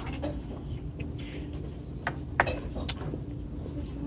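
Restaurant dining-room background noise, a steady low rumble, with two sharp clicks of tableware about half a second apart, around two and a half seconds in.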